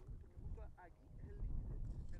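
Low, uneven wind rumble on an outdoor microphone, with faint distant voices.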